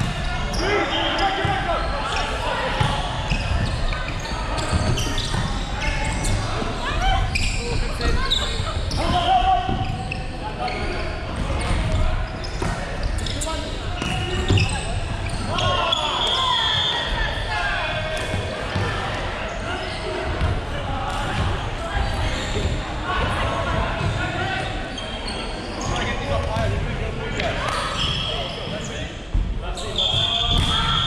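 Indoor volleyball play in a large, echoing hall: the ball is struck and bounces, and players' voices call out over the court. A short, shrill whistle sounds about halfway through and again right at the end.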